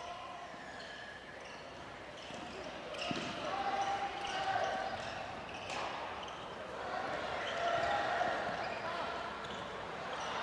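Live basketball game sound in a gymnasium: a basketball bouncing on the hardwood court, with a couple of sharper thuds, and players' and spectators' voices echoing in the hall.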